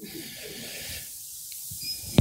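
Pause between words: a steady faint hiss of room tone and microphone noise.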